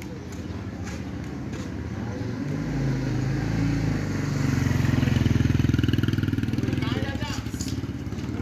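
A motor vehicle's engine running close by, growing louder through the first half and loudest a little past the middle, then easing slightly near the end.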